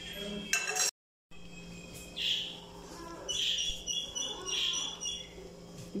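A pot of lentil stew bubbling at the boil, with a few short high chirp-like sounds a couple of seconds in and again later. The sound cuts out completely for a moment about a second in.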